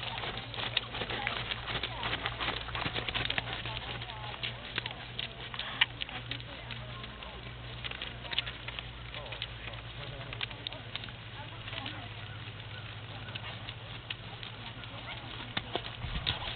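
Outdoor ambience: a steady low hum with scattered soft clicks and knocks, and faint distant voices.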